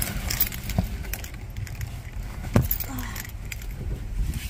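Keys jangling and scattered small clicks and rattles of handling as someone gets into a car, with one dull thump about two and a half seconds in.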